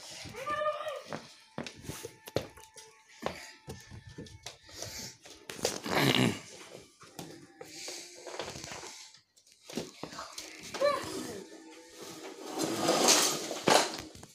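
A child's wordless vocal noises over music, with scattered knocks and clatters of toys on a wooden floor.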